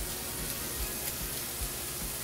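Ground turkey sizzling steadily in olive oil in a skillet, a low even hiss.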